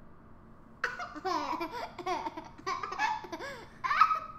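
A toddler laughing and vocalizing in high-pitched rising-and-falling bursts, starting about a second in.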